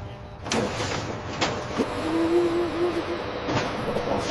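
Factory machinery sound: a rush of mechanical noise starts about half a second in, with a few sharp clicks and a short steady low hum in the middle.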